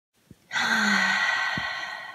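A person's long, breathy sigh, starting about half a second in and slowly trailing away.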